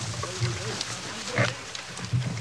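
Wild boar and hog dogs fighting at close quarters: continuous low growling and grunting, with a louder cry about a second and a half in.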